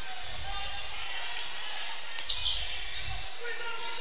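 Live gymnasium sound of a basketball game picked up by the broadcast microphone: steady, indistinct crowd voices and court noise, with a short high squeak about two and a half seconds in.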